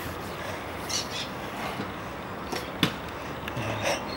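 Stunt scooter rolling on a concrete skatepark bowl over a steady background hiss, with a few light clicks and one sharp clack a little before three seconds in.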